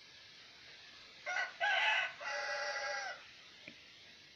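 A rooster crowing once: two short notes, then a long held note that drops away at its end.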